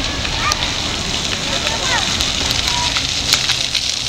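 Water jets of a ground-level plaza fountain spraying and splashing onto wet pavement: a steady hiss full of small crackling splashes. Children's voices call out briefly over it.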